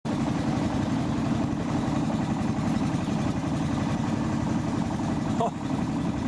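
Motor of a narrow wooden boat running steadily under way, a continuous low engine drone with a fast, even pulse.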